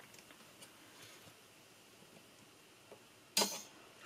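Faint small metal clicks from needle-nose pliers and a spring being hooked onto the metal mechanism of an Apple MF355F floppy drive, then a brief louder noisy sound near the end.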